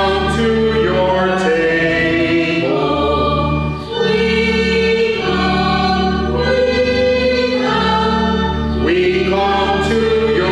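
Church choir singing a slow hymn, the sung notes moving stepwise over steady held low notes, with a brief breath-like dip about four seconds in.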